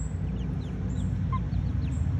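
Young chickens peeping: several short, faint, falling peeps and one brief call about a second in, over a steady low rumble.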